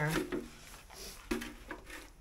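Water being dumped from a plastic water bucket into a waste bucket, a faint splashing hiss, with a sharp knock of a bucket or its wire handle about a second and a half in.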